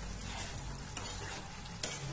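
A spatula stirring a wet vegetable bhaji of peas, potato and cabbage in a pan as it cooks, over a steady sizzle, with a couple of sharper scrapes against the pan.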